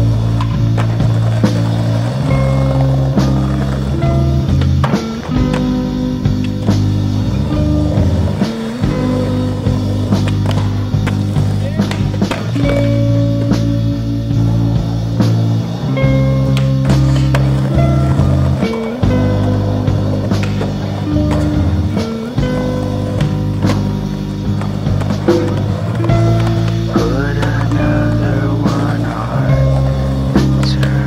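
Skateboards rolling on concrete and asphalt, with sharp clacks from the boards on pops and landings at irregular moments, over a music track with sustained chords.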